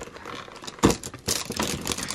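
Unpacking rustle of a cardboard box lined with tissue paper as a power cord and plug are moved about inside it: one knock a little under a second in, then steady rustling and crinkling of paper and cardboard.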